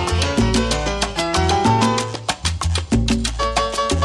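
Latin tropical dance music: a piano melody over a bass line and a steady percussion beat.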